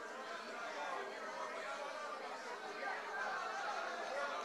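A congregation praying aloud all at once: many voices overlapping into an unintelligible murmur, with no single voice standing out.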